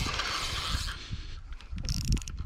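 Spinning reel being cranked to wind in line, its gearing clicking and whirring quickly, with a small fish on the line.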